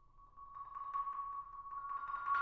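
Solo marimba holding one high note in a soft roll, quiet at first and swelling from about half a second in as more mallet strokes join.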